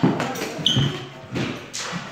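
Footfalls stamping and shuffling on a wooden floor, with several sharp knocks. About a third of the way in comes a brief metallic ring, the sound of steel longsword blades meeting.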